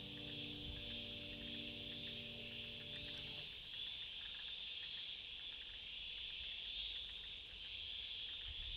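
A steady, high, even chorus of insects such as crickets, under a held music chord that stops about three seconds in.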